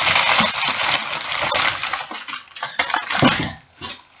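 Thin plastic shopping bag rustling and crinkling as it is handled and an item is pulled out of it. The crinkling is dense at first, then breaks into a few separate rustles that die away near the end.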